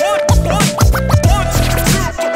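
Hip hop track intro with turntable scratching in short back-and-forth sweeps over a drum beat and a held tone.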